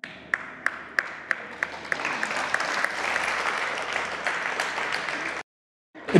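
Studio audience applauding: rhythmic clapping in unison, about three claps a second, swells after about two seconds into full continuous applause. It is cut off abruptly near the end.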